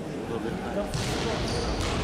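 Futsal ball thudding on a hard sports-hall floor and off players' feet during play, with a couple of sharper knocks about a second in and near the end, and players' voices calling.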